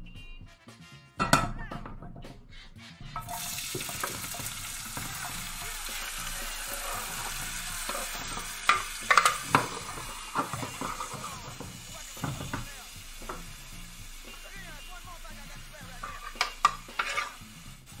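Chopped vegetables (zucchini, peppers, tomato) going into a hot frying pan and sizzling steadily from about three seconds in. A few knocks and scrapes come from the wooden cutting board and utensils against the pan as the vegetables are pushed off it.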